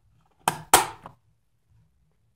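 AAA battery pushed into a slot of a plastic battery charger, snapping against the spring contacts: two sharp clicks about a third of a second apart, the second louder.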